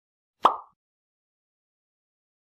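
One short pop sound effect, edited in at the title card, about half a second in.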